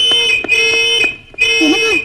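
A whistle blown in two long, steady blasts with a short break just after a second in.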